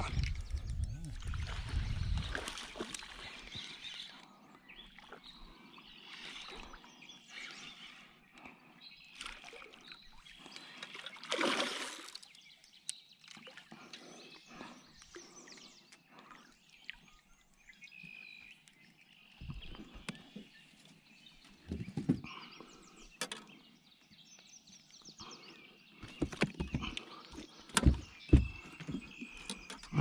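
A smallmouth bass being played and landed from a boat: scattered splashes and handling noises, with several sharp knocks and thumps near the end as the fish comes aboard onto the deck.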